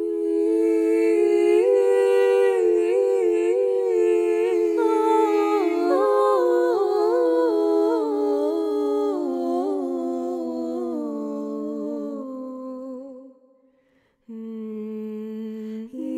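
Wordless a cappella humming in overlapping voices: low notes held under a melody that steps slowly downward. It fades out about thirteen seconds in, and after a brief silence a new, lower held note begins.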